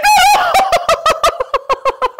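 A woman laughing loudly and high-pitched: a held shriek that breaks into a quick run of cackles, fading away near the end.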